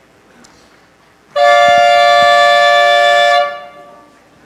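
A loud horn-like tone: one steady pitch with a rich, reedy set of overtones, held for about two seconds starting over a second in, then dying away. The presenter answers it as a cue to hurry up.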